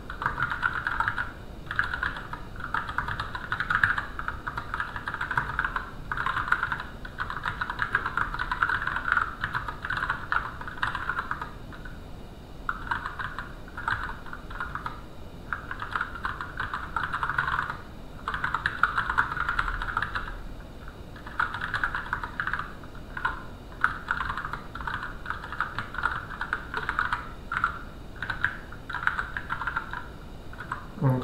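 Typing on a computer keyboard: fast runs of keystrokes lasting a few seconds each, broken by short pauses, while text is being written.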